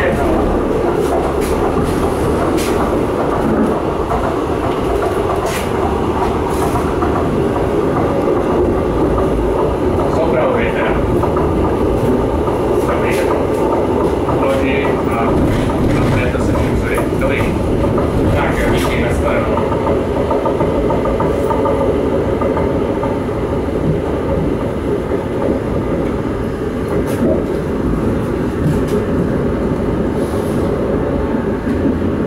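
Steady running noise inside a Czech Railways class 814.2 RegioNova diesel railcar under way: a low drone from the engine and the wheels on the rails, with occasional short clicks.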